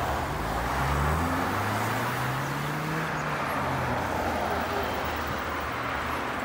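Road traffic: a minibus drives past close by, its engine note rising as it speeds up, over steady tyre and road noise.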